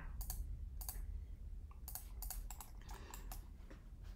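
Irregular, scattered clicks of a computer mouse and keyboard, a dozen or so, over a low steady hum.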